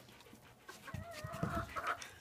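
Chicken calling: a drawn-out, wavering hen vocalisation that starts about a second in and runs to the end, with a few soft low thumps beneath it.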